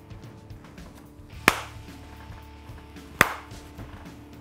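Two sharp hand claps about a second and a half apart, made to test whether sound-reactive animatronic cat ears respond, with faint background music underneath.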